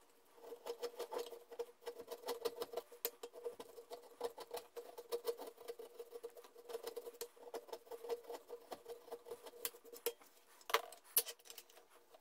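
Hand file rasping back and forth over a plywood knife handle in quick, continuous strokes. A couple of louder knocks come near the end.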